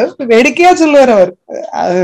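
A woman's voice speaking. After a brief pause near the end comes a short, breathy, rough vocal sound.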